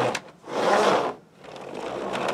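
Rubber-band-powered wooden Ugears semi truck model driving itself, its wooden gear train and wheels running in uneven surges as the wound rubber band unwinds.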